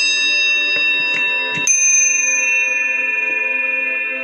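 Small brass hand bell hanging from a chain, struck a few times in quick succession in the first two seconds, the last strike the loudest, then ringing on with long clear tones that fade slowly.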